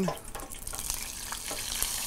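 Hot frying oil sizzling quietly, a steady hiss with a few faint ticks.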